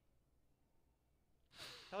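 Near silence: room tone, then a breathy sound about a second and a half in that runs straight into a man's voice starting to speak.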